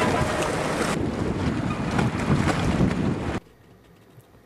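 Seawater surging and splashing around wooden pier pilings, with wind buffeting the microphone; the sound cuts off suddenly near the end.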